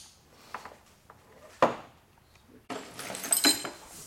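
Small steel parts and tools being handled on a wooden workbench: a few separate knocks, the sharpest about a second and a half in, then a short burst of metallic clinking and rattling with a bright ring near the end.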